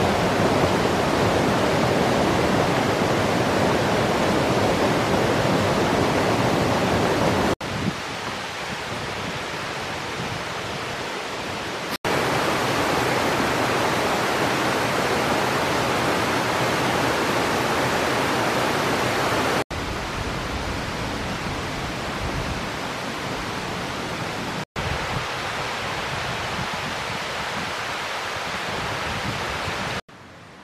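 Steady rush of a mountain stream's water. Its loudness drops or rises abruptly four times.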